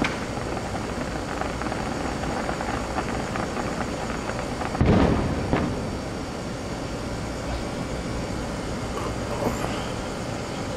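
Distant aerial fireworks shells bursting over a steady background rumble: one loud boom about five seconds in, followed shortly by a smaller one.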